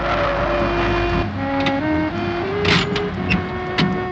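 A car engine starting up and revving for about the first second, then background film music with a stepping melody over it.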